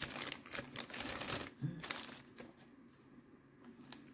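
Faint, quick clicks and light rustling from small plastic zip-top bags of metal jewelry being handled. The clicks are busiest in the first two seconds and then die away.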